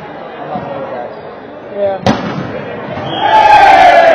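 A single sharp smack of a volleyball being struck about halfway through, then, a second later, loud shouting from the players, the loudest sound here, over background chatter in a large gym.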